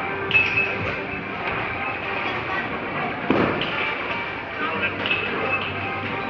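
Bowling alley ambience: background music from the venue over the murmur of other people's voices, with a single thud about three seconds in.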